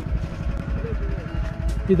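A motor vehicle's engine running nearby, a low rumble with a fine regular pulse, with faint voices in the background.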